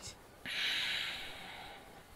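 A breathy hiss that starts suddenly about half a second in and fades away over the next second and a half.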